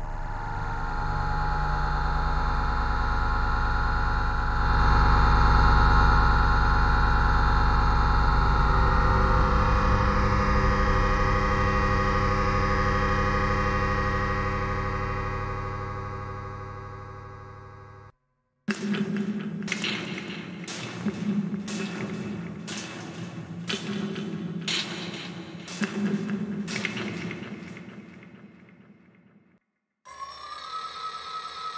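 Cinematic atmosphere preset ('Abstract System') played in FrozenPlain's Mirage sample-based synth: a dense, sustained drone of many steady tones that swells and then fades away over about 17 seconds. After a brief gap, the next preset plays a rhythmic pattern of pulsing hits, about one every 0.7 seconds, which fades out near the end.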